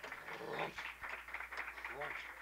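Indistinct murmur of nightclub voices with scattered clicks, from an old reel-to-reel magnetic tape recording, over a steady low hum.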